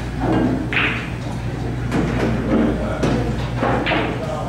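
Pool hall background: indistinct chatter over a steady low hum, with a few sharp clicks of pool balls striking on nearby tables.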